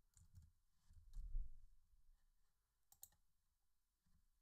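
A few faint clicks of typing on a computer keyboard. The sharpest comes about three seconds in, and there is a soft low bump about a second and a half in.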